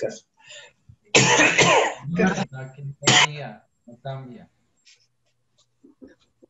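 A person coughing about a second in, amid indistinct talk heard over a video-call audio link.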